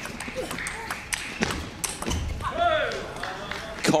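Table tennis ball being played back and forth in a doubles rally: a series of sharp, irregular clicks of the celluloid-type ball on rubber bats and the table.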